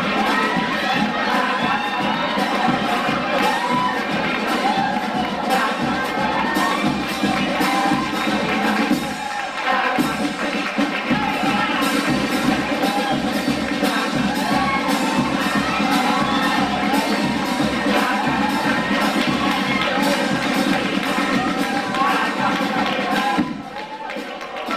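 Live chirigota performance: a men's carnival group singing while the theatre audience cheers and applauds, the sound dropping away shortly before the end.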